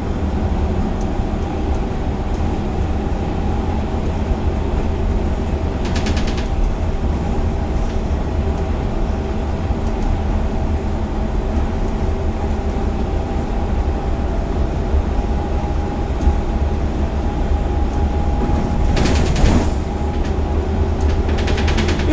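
Cab interior of a Gillig Advantage low-floor transit bus under way: a steady deep rumble with a steady whine from the drivetrain. There are brief bursts of noise about six seconds in and again near the end.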